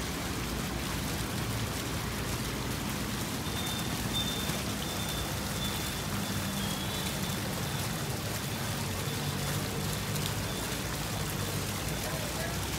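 Fountain water splashing steadily into a stone pool, a continuous rain-like patter with no let-up.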